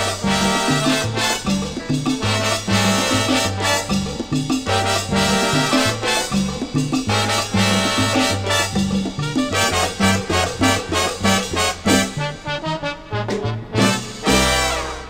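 Salsa band playing an instrumental passage, with a stepping bass line under steady percussion and horns.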